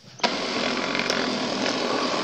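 Electric blender motor running, grinding peeled garlic cloves into a paste, starting about a quarter second in and running steadily.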